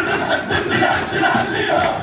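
A group of voices shouting and chanting in unison, military style, with music under it.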